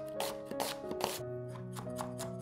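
Chef's knife chopping on a wooden cutting board: a quick, uneven run of sharp strikes, with a short pause a little past halfway before the chopping resumes. Background music plays underneath.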